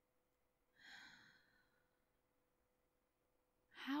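A woman's soft, breathy sigh, about a second long and fading away, just under a second in; otherwise near silence until she starts to speak at the very end.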